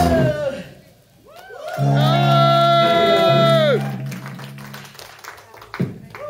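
Live rock band ending a song. The band stops abruptly with a falling sung note, then plays a final held chord under a long sung note that lasts about two seconds and ends with a drop in pitch. The chord rings away, with a single thump near the end.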